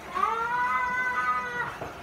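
One long, high-pitched vocal cry held for about a second and a half, rising at the start, holding steady, then falling away at the end.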